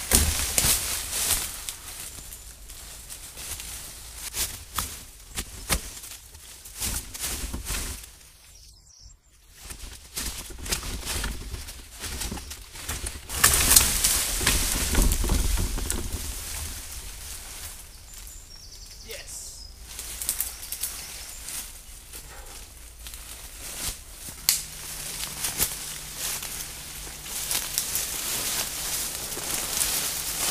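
Leaves, twigs and vines rustling and snapping in thick undergrowth as someone pushes through the brush and tugs ivy vines from the trees. The crackling comes in irregular bursts and is loudest about halfway through.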